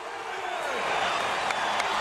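Basketball arena crowd noise: thousands of fans making a steady din of voices and clapping that slowly grows louder.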